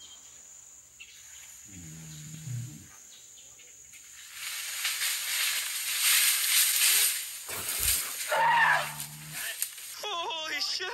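Wild elephant giving two low, steady-pitched calls, one about two seconds in and one near the end, with a louder wash of noise building in between.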